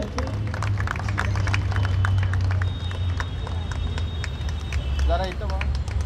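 Low steady rumble picked up by an open microphone, with scattered faint clicks and a brief voice a little after five seconds in.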